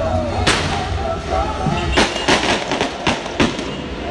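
Fireworks going off: one sharp bang about half a second in, then a quick string of several more bangs in the second half. Crowd singing carries on underneath.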